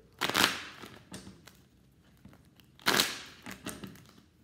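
A tarot deck being riffle-shuffled: two short rattling bursts of cards, the first just after the start and the second about three seconds in, with light clicks of the cards between them.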